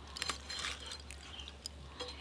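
Faint wet squishing and a few small clicks as hands pull apart a raw katla fish head, over a low steady hum.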